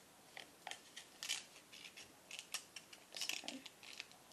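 A sheet of paper being folded and creased by hand into an origami cup: quiet, irregular crackles and rustles as the flaps are pressed down.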